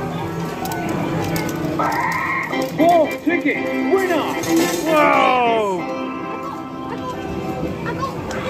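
Amusement arcade machines playing electronic music and jingles, with a run of falling electronic tones about five seconds in, over scattered clinks from a coin-pusher machine.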